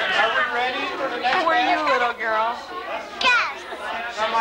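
Children's voices and chatter, high-pitched and overlapping, with one high falling squeal about three seconds in.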